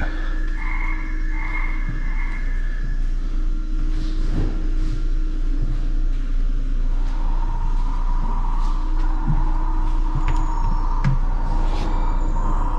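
Steady indoor ambience of a large store: a constant low hum with held tones over it and a few small knocks.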